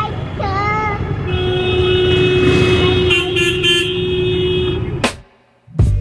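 Street traffic: engines running under a vehicle horn held for about three and a half seconds, with a second horn giving short toots partway through. The sound cuts off suddenly near the end.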